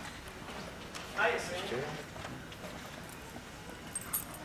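Footsteps knocking on a stage floor, with a short voice about a second in.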